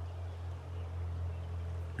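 A pause in the talk, filled by a steady low hum with faint background hiss.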